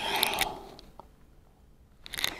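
A person breathing out audibly, a long exhale that fades away over about a second, with one faint click about a second in.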